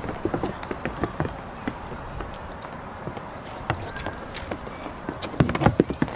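Goat hooves tapping on wooden boards as several goats walk and trot about, a run of irregular knocks that bunch up and grow louder near the end.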